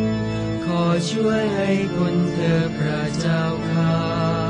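Sung Catholic litany in Thai, chanted over sustained low held chords, with the voices moving between held notes.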